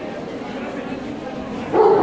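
A dog barks once near the end, a short loud bark over the murmur of voices in a large hall.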